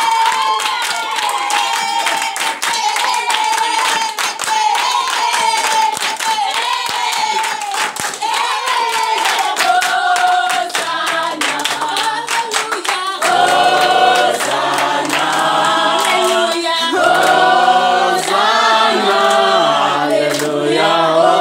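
A congregation singing unaccompanied, with hands clapping in a steady rhythm. At first a single high sung line carries over the clapping. About thirteen seconds in, more voices join and the singing becomes fuller and louder.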